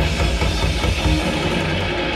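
Thrash metal band playing live without vocals: distorted electric guitar, bass and a drum kit.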